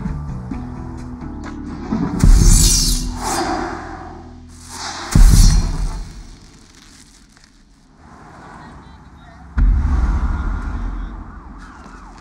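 Film score with three heavy booming hits, about two, five and nine and a half seconds in. The first two come with a bright swish, and each dies away over a second or two.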